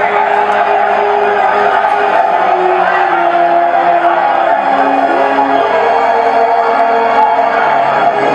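Film soundtrack excerpt played over a PA: sustained orchestral music with a crowd of men's voices shouting beneath it.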